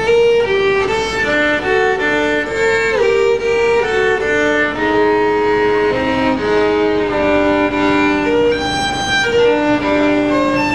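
Solo violin playing a bowed melody, the notes changing several times a second at first and held longer in the second half.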